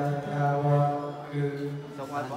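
Buddhist monk chanting into a microphone in a low, steady monotone, holding each syllable with short breaks between.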